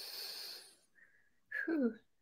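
A person's breath, a soft hissing intake picked up close on a microphone, fading out under a second in; a short vocal sound starts near the end.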